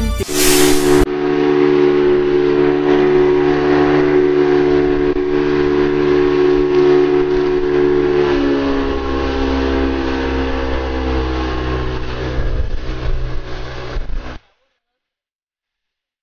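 Boat outboard motor running at speed, a loud steady whine with rushing hiss of wind and water; its pitch drops a little past halfway, and it cuts off suddenly near the end.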